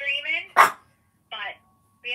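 A dog barks once, short and loud, about half a second in, cutting across a voice coming through a phone speaker.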